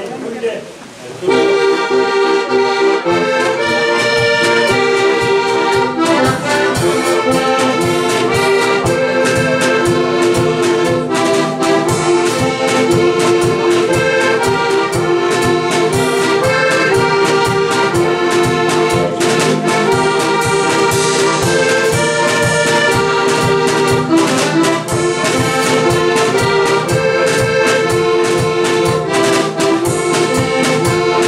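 Heligonka, the Czech diatonic button accordion, playing a lively folk tune that starts about a second in, its melody over a steady, even beat.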